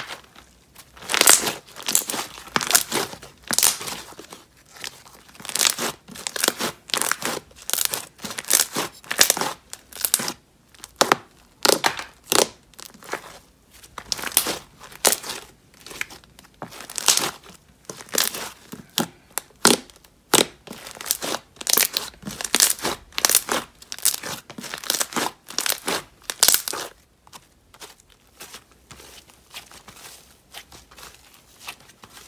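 Thick white slime being squished, stretched and folded by hand, giving a run of irregular sticky crackles and pops, several a second. The crackling dies away about three seconds before the end.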